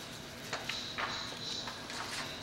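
Tissue wipe rustling and crinkling faintly as it is scrubbed against a freshly soldered connector pin to clean off flux residue, with a few soft ticks.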